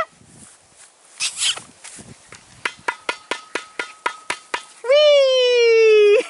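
A person calling a puppy: a run of quick mouth clicks, about five a second for two seconds, then a drawn-out voiced "ooh" held for about a second, its pitch sliding slightly down.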